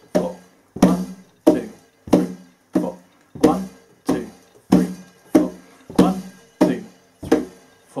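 Hand strikes on a wooden cajon in a steady beat, about three strikes every two seconds, each a sharp slap with a short ringing low tone. Foot stomps land with some of the beats.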